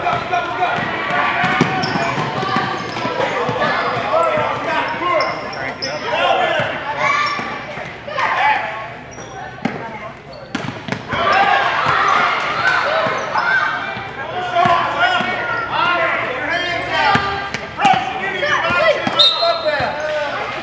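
Basketball dribbled on a hardwood gym floor, the bounces echoing in a large gym, under continuous overlapping shouting and chatter from the people in the gym.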